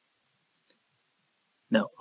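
Two quick, faint clicks of a computer mouse button about half a second in, then a man starts speaking near the end.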